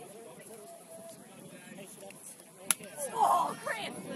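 Low chatter of players in the background, then a single sharp slap-like crack about two-thirds of the way in, followed at once by a short loud shout.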